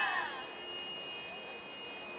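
Several young women's voices calling out together, trailing off in the first half-second, followed by a steady, thin, high-pitched tone that holds on over faint background hiss.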